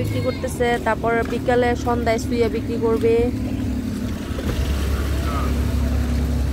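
Yellow commuter minibus engine running with a steady low rumble that comes in about four and a half seconds in as the vehicle draws close. Voices talk over the first half.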